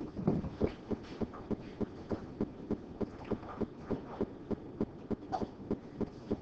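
Quiet, regular knocking or tapping, about three soft knocks a second, over low room noise.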